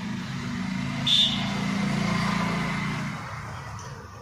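A motor vehicle's engine running steadily, then fading away near the end. A brief high squeak about a second in.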